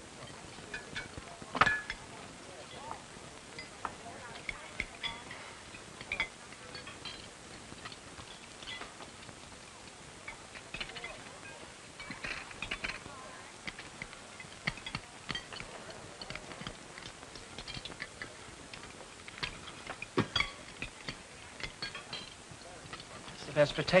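Scattered clinks and clicks of dishes and cutlery as people eat at a table, with a sharper knock about a second and a half in and another near twenty seconds, under faint low voices.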